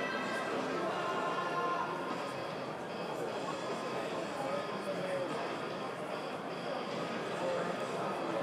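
Indistinct background talk of several people, steady and fairly quiet, with no single voice standing out.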